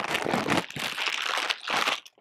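Clear plastic bag crinkling and rustling continuously as a bulky power adapter is pulled out of it, stopping suddenly at the end.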